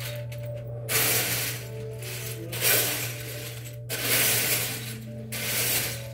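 Loose plastic Lego bricks being rummaged through, clattering in three bursts of about a second each. A steady low hum and faint music sit underneath.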